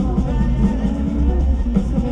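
Live rock band playing through a concert PA: a drum kit over a deep, steady bass line, loud and unbroken.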